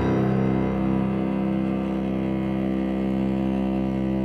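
Cello music: the cello holds one long bowed note, held steadily.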